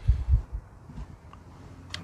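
A few low, muffled thumps in the first half second, then a faint low hum.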